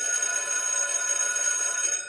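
Electric school bell ringing: a steady ring that starts abruptly and holds unbroken.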